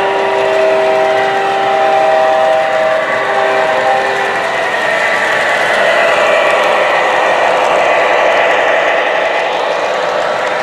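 O gauge model CSX Genset diesel locomotive's onboard sound system blowing its horn, a chord of several tones broken by short gaps, for about the first four seconds. Then the recorded diesel sound and the wheels rolling on three-rail track fill the rest, louder about six seconds in as the locomotive passes close by.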